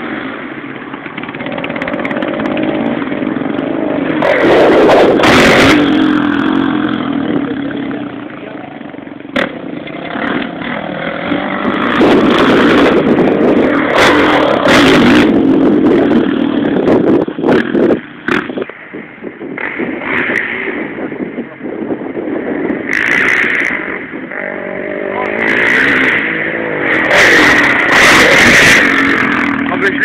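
Motocross dirt bike engines revving on a track, rising and falling repeatedly as the bikes accelerate and ease off. Several short rushing bursts of noise cut in over the engines.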